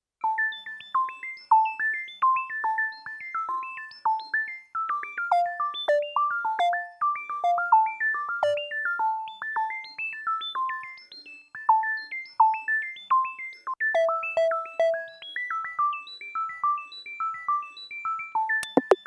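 Electronic music: a lone synthesizer plays a quick, beeping melody of short plucked notes, about three a second, with no drum beat.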